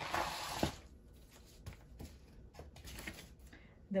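Paper rustling as printed cards and papers are taken out of a box, loudest in the first half-second, then softer scattered handling sounds.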